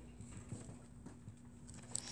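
Faint pen-on-paper writing: a few light ticks and taps of a pen tip on a worksheet over a steady low hum, with a sharper click near the end.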